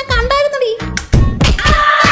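A drawn-out pitched voice ends, followed about a second in by a couple of heavy thuds, after which electronic music with a steady beat starts.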